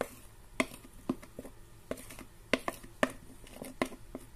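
Scattered light clicks and taps of kitchen handling, about a dozen short, irregular knocks over a few seconds.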